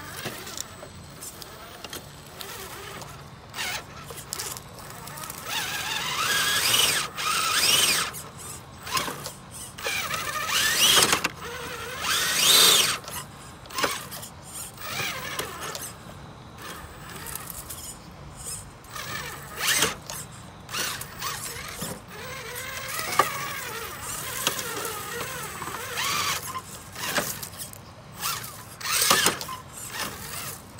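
Traxxas TRX-4 RC crawler's electric motor and geared drivetrain whining in repeated bursts as it is throttled over rocks. The pitch rises and falls with each burst.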